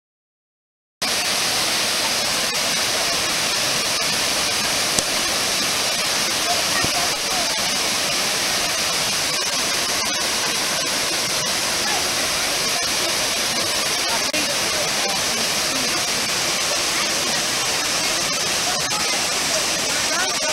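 Waterfall rushing steadily over rock into a pool, starting abruptly about a second in.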